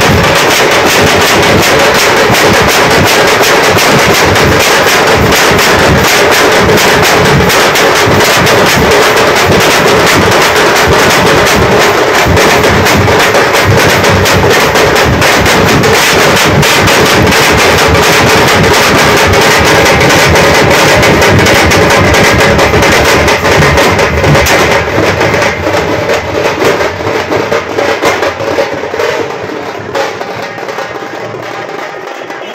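A large ensemble of parai frame drums beaten with sticks in a fast, dense, loud rhythm. The playing thins out and grows quieter over the last few seconds.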